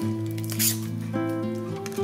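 Relaxing guitar background music, with a brief crinkle of plastic packaging being handled about half a second in.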